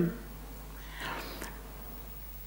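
A pause in speech: quiet room tone with a steady low hum and a faint breath about a second in.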